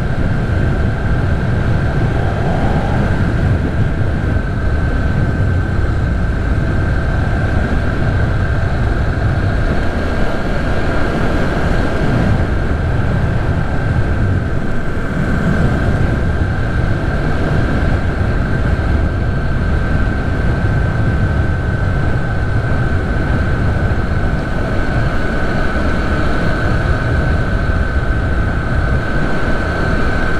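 Motorcycle travelling at steady speed on the open road: the engine runs evenly under heavy wind rush on the microphone, with a thin, steady high whine on top.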